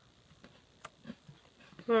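Quiet chewing of white-fudge-covered Oreo cookies, with a few faint mouth clicks, one a little sharper about halfway through; a woman starts to speak at the very end.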